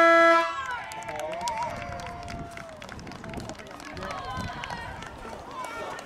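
Full-time hooter at a junior football ground, sounding one steady tone that cuts off about half a second in and marks the end of the game. Players and spectators call out after it.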